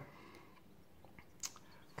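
Near silence: room tone, with one faint short click about a second and a half in.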